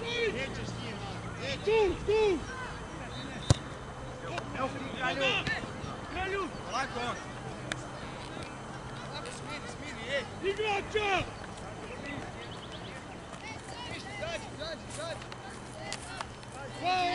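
Scattered calls and shouts of players on an outdoor football pitch. There is one sharp knock about three and a half seconds in.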